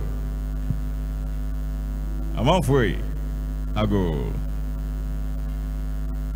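Steady electrical mains hum with a stack of buzzing overtones, running under everything at a constant level. A voice sounds two short gliding phrases, about two and a half and four seconds in.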